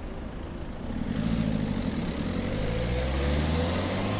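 Car engine pulling away and accelerating, its pitch slowly rising from about a second in over a low steady rumble.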